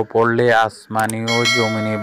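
A man's voice speaking Bengali, with a bright bell-like chime coming in about two-thirds of the way through. The chime is the sound effect of an animated subscribe-and-notification-bell button.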